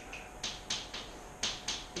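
Chalk clicking against a blackboard as a line of formula is written: about six short, sharp taps in under a second and a half.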